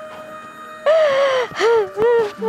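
Soft background music, then about a second in a loud, breathy gasping cry that falls in pitch, followed by a shorter cry.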